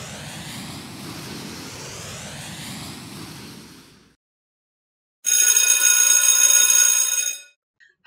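Animated-intro sound effects: a rocket-launch whoosh, a sweeping noise that fades out about four seconds in. After a second of silence comes a bright ringing tone lasting about two seconds, which stops suddenly.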